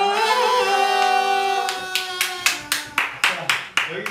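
A group of voices ends a song on a long held note, with party horns blowing, then hands start clapping in an even beat of about five claps a second from around two seconds in.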